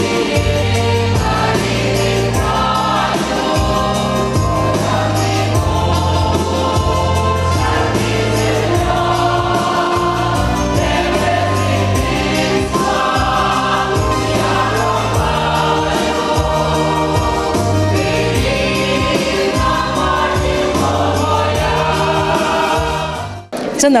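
A large amateur folk choir of women's and men's voices singing a song in full voice, over a steady low bass line. The song cuts off abruptly just before the end.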